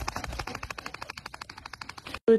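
A dog's teeth clicking rapidly as it chews on a blue toy held in its mouth: a fast, even run of short clicks, about a dozen a second.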